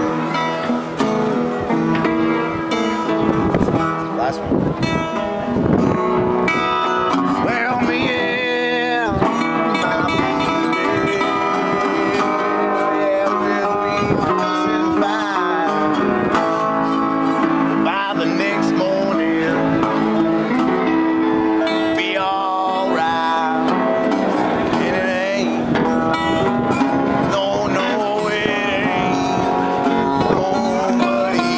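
Live acoustic guitar jam: a metal-bodied resonator guitar played together with other guitars, steady and loud throughout.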